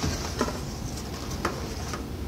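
Handling noise as a small rifle is drawn out of its cardboard box and packing: soft rustling with a few light knocks.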